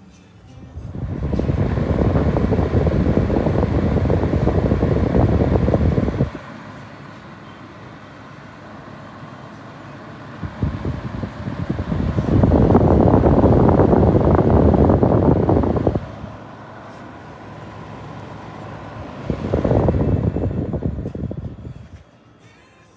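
Garo FT19 electric fan heater running, its fan giving a loud rushing air noise in three stretches that drop abruptly to a quieter steady hum in between.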